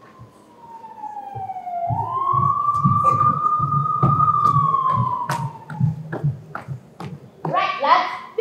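A single slow siren wail: it sinks, swoops up about two seconds in, holds, then falls away around six seconds, over a run of low thuds. Speech begins at the very end.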